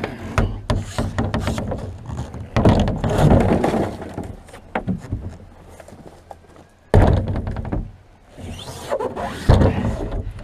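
Plastic wheelie bins being handled: rubbish tipped and tumbling from one bin into another, with irregular knocks and thumps of the bin bodies and lids. A sudden loud bang comes about seven seconds in, and another hit near the end.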